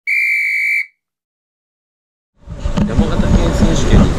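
A single steady electronic beep lasting just under a second, then dead silence, then outdoor background noise with a low rumble starting about two and a half seconds in.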